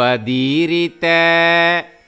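A man's voice slowly chanting Sanskrit verse in a sung, melodic style, in two drawn-out phrases. The first glides in pitch. The second is held on a steady note for nearly a second and then stops.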